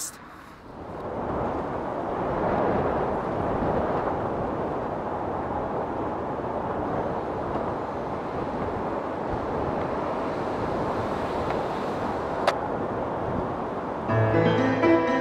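Steady rushing noise, with one sharp click near the end.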